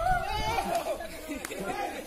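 Several people talking over each other in indistinct, excited chatter.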